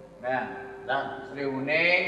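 A man's voice in three short phrases with a wavering, quavering pitch, the last one climbing high near the end, over a faint steady tone.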